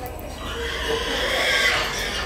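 Pig squealing, one drawn-out, high-pitched squeal through the second half, over the chatter of a crowd.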